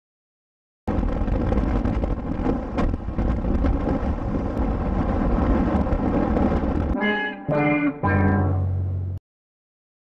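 Wind and motorcycle engine noise on a helmet camera, starting abruptly about a second in. Near the end come three short pitched tones, the last one falling in pitch, and the sound then cuts off suddenly.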